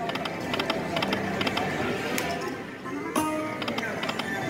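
Aristocrat Dragon's Riches video slot machine spinning its reels: a rapid run of clicking ticks from the machine's speaker, with a sharper sound carrying several held tones about three seconds in as a spin resolves or starts. Casino background noise runs underneath.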